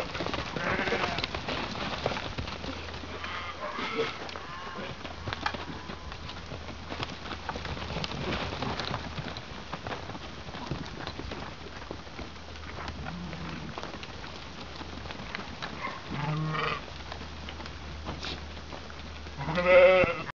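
A flock of sheep moving about in a dirt yard, with scattered bleats: one about a second in, a couple around three to four seconds, another about sixteen seconds in, and the loudest right at the end. Hooves shuffle on the dirt between the calls.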